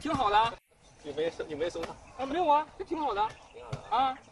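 Conversational speech only: a few short spoken phrases with pauses between them, and no other sound standing out.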